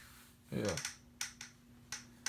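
A few sharp, separate clicks, about four in two seconds, from handling the fire alarm devices, over a faint steady hum. A man says "yeah" about half a second in.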